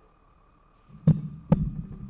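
About a second in, two sharp thumps half a second apart, followed by a low rumbling handling noise: a microphone on its stand being handled.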